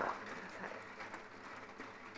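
Faint clicking of mahjong tiles being handled on the table, over low room noise.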